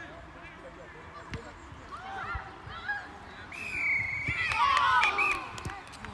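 Scattered shouts of children and adults on a football pitch; about three and a half seconds in, a short, steady high whistle blast, the referee's final whistle, followed by louder shouting from several voices.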